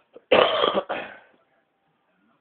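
A person coughing twice, loud and close to the microphone.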